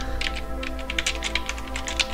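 Fast typing on a computer keyboard: a quick, even run of keystrokes, about eight a second.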